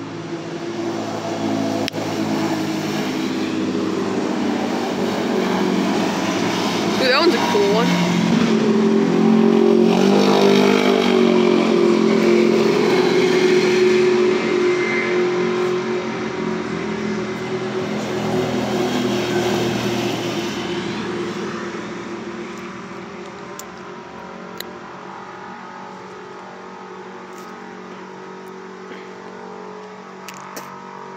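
Side-by-side UTV engines going by on a road: the sound builds over the first few seconds, is loudest around the middle with its pitch shifting up and down, then fades away over the last third.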